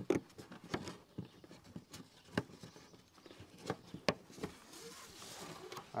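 Beehive strap being pulled tight and fastened over a polystyrene hive box: scattered light taps, clicks and rustles of the strap webbing and its fastening, with a longer sliding rustle near the end.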